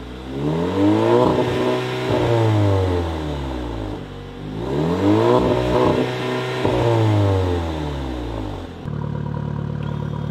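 Audi S3 8V's turbocharged 2.0-litre four-cylinder, breathing through an Armytrix valved exhaust, blipped twice while stationary: each rev climbs to a peak within about a second and falls back over a few seconds. It then settles abruptly into a steady idle near the end.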